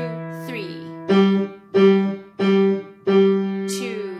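Yamaha upright piano, both hands playing the same notes of the C five-finger scale: a held note fading, then four notes struck at an even, slow beat about two-thirds of a second apart, the last one held.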